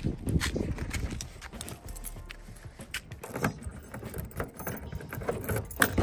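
Footsteps tapping on a paved street, irregular and close, with a louder knock just before the end.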